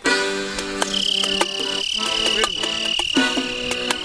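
Accordion and hand drums playing Cuban son: sustained accordion chords with steady drum strokes. A high, steady tone is held over the top from about a second in to the end.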